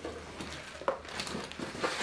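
Rustling and handling of a cardboard package and plastic wrapping as they are picked up, with a small knock about a second in and another near the end.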